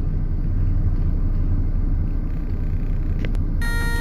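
Steady low rumble of a car's engine and tyres heard from inside the cabin while driving in slow traffic. Near the end, background music with sustained pipe-like tones comes in.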